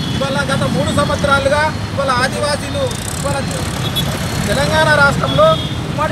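A man speaking over a steady low rumble of street traffic.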